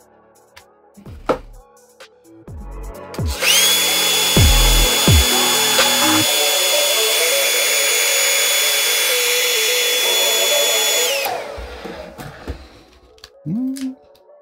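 Handheld hair dryer switched on about three seconds in, running with a steady high whine over the hiss of its airflow for about eight seconds. It is then switched off, and the whine falls away as the fan spins down.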